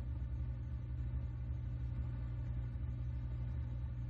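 Steady low electrical hum with a buzzy row of evenly spaced overtones, the background hum of an old film soundtrack.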